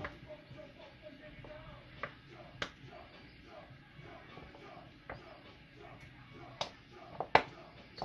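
Plastic honey squeeze bottle being squeezed over a hot nonstick frying pan: a handful of sharp clicks and taps, the loudest near the end, over a faint steady background.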